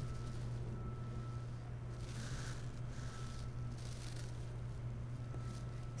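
A steady low hum with a few faint, soft hissing sounds about every second or so.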